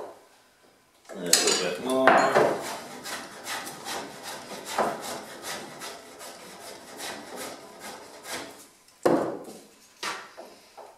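Hand plane shaving a sawn wooden boat frame in short strokes, taking chops off the back corner to bring its bevel down flat. It starts about a second in with a loud scraping stretch, goes on as a quick run of shorter strokes, and ends with another loud stroke near the end.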